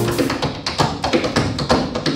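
Tap shoes striking a wooden tap board in a fast, dense run of sharp taps, with jazz drums playing along.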